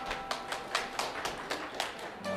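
Sharp, evenly spaced claps or taps at about five a second, counting off the tempo before the band comes in.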